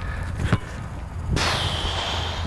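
A soccer ball struck once on the volley, a single sharp thud about half a second in. An even hiss follows for about a second near the end.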